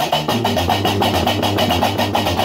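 Gnawa music: a guembri (sintir) plays a repeating, plucked bass line over a fast, steady metallic clatter of qraqeb castanets.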